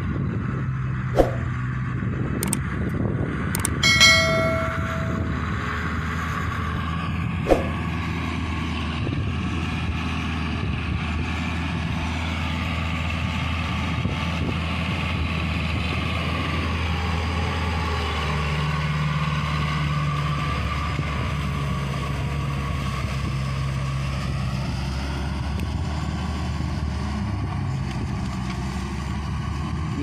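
Claas Talos tractor's diesel engine running steadily under load while it plows a flooded rice paddy, its pitch shifting slightly about two-thirds of the way through. A few sharp knocks and a brief high tone come in the first several seconds.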